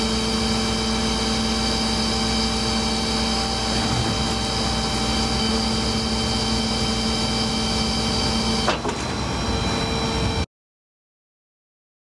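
Tow truck's PTO-driven hydraulics running with a steady high-pitched whine as the wheel lift is tilted and raised into its travel position. A little before 9 s there is a click and the lower hum drops out while the whine carries on.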